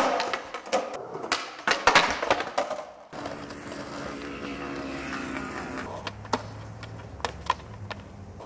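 Skateboard sounds: for the first three seconds, a rapid series of sharp loud clacks as the board is popped and hits concrete and the wheels land. Then a steadier, quieter rumble of skateboard wheels rolling on asphalt, with a few scattered clicks near the end.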